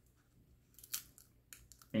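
Faint handling of a plastic water bottle: a few soft crinkles and clicks, the clearest about a second in.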